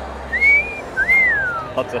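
A person whistles a two-note wolf whistle. The first note rises short and quick; the second rises and then slides down longer.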